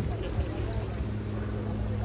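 A steady low hum with faint voices in the background.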